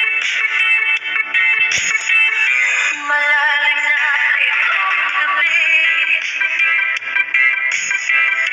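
Background music with singing.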